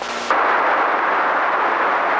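A steady rushing noise starts abruptly a moment in and holds at an even level.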